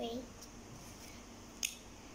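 A single sharp plastic click about a second and a half in, from a felt-tip marker being uncapped, over faint room hiss.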